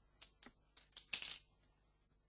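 About five faint, short clicks within the first second and a half, the last one a little longer.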